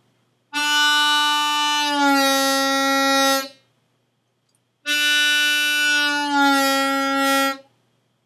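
A 10-hole diatonic harmonica in C played on hole 1 draw: two long held notes, each starting on D and bending down about a semitone partway through, then held on the lower note. The drop in pitch is a draw bend, made by moving the tongue back in the mouth.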